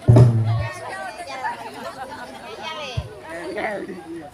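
A single low drum stroke rings out at the start, then several voices talk over one another, with a short knock about three seconds in.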